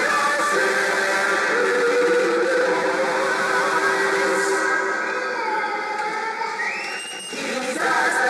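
Church choir of mixed women's and men's voices singing together in parts, with a brief drop in loudness about seven seconds in.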